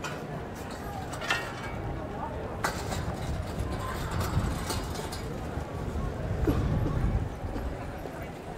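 Ambience of a busy pedestrian square: indistinct voices of passers-by and footsteps on stone paving, with sharp clicks about one and a half and two and a half seconds in. A low rumble swells and then drops away about seven seconds in.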